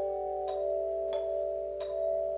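Handbell choir ringing a slow piece. Chords ring on while three new notes are struck about two-thirds of a second apart.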